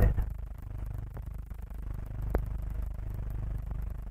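Steady low hum and rumble of an old film soundtrack between lines of narration, with a faint click about a second in and a sharper click a little after two seconds.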